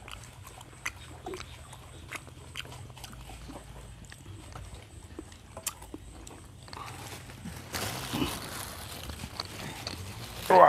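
Quiet meal sounds: scattered light clicks and taps of chopsticks and foam food boxes as people eat, over a steady low hum. A louder rustling hiss sets in near the end.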